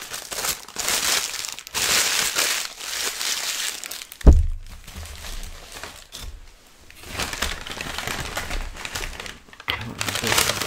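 Paper sandwich wrapper crinkling and rustling as a biscuit is unwrapped and handled. A single sharp thump about four seconds in is the loudest sound, and softer paper crinkling returns near the end.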